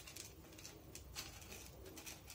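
Very quiet room with faint clicks and scrapes of small white aquarium pebbles being shifted by hand in a small glass tank.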